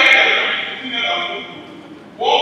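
A man speaking into a handheld microphone, amplified over a PA in a large hall.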